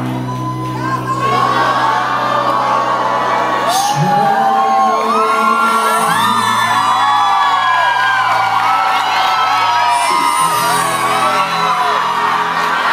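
A band playing live, with sustained bass notes that change chord every few seconds, under many overlapping voices: the audience whooping and cheering over the music.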